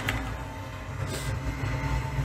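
Low, steady rumble from the anime episode's soundtrack, with a faint tone above it and a brief hiss about a second in.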